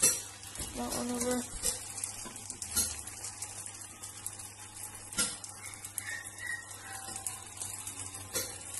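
Burger patties sizzling in a frying pan while a slotted spatula scrapes under them and knocks against the pan to flip them, with a sharp knock right at the start and another about five seconds in.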